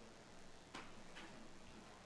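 Near silence: room tone with two faint clicks about half a second apart.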